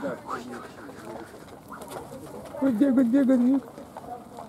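Ostrich chicks calling: a soft, warbling coo about a second long, starting about two and a half seconds in.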